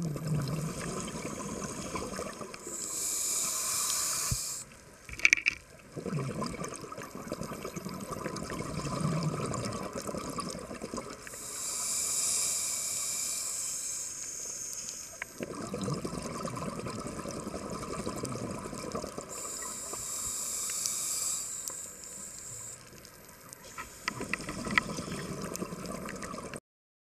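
Scuba diver breathing through a regulator underwater: hissing inhalations alternate with bubbling exhalations, about three full breaths, with a sharp click about five seconds in.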